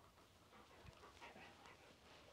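Near silence, with a few faint soft sounds from a dog moving at heel about a second in.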